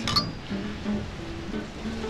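Champagne glasses clinking together once in a toast, a short high ringing chime just after the start, over background music.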